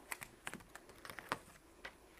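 Faint, scattered ticks and taps of a pointed craft poke tool working at a piece of tape on card stock, a few separate clicks.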